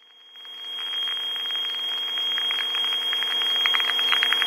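An aviation radio channel opening with no words: a keyed microphone carries steady aircraft engine drone and hiss with a thin high whine. It swells over the first second and then holds, just before a pilot's call.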